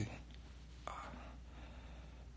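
A man's soft, breathy grunt ("uh") about a second in, over a low steady hum.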